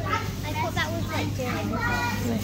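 Young children's voices chattering and calling out in high, quick, rising and falling tones, over a steady low hum.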